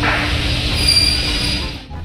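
Rumbling of a trolley carrying a plywood sheet being pushed across a warehouse floor, with a brief high-pitched wheel squeal about a second in; the sound drops off suddenly near the end.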